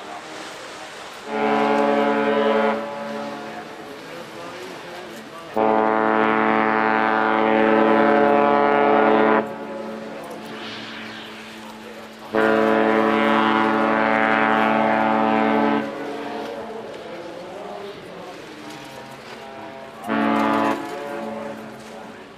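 Cruise ship's horn sounding four steady blasts as the ship leaves port: a short one, two long ones of three to four seconds each, and a brief one near the end.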